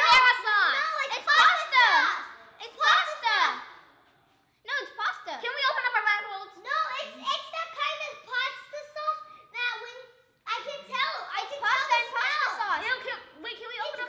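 Children's high voices talking and exclaiming, with two short pauses.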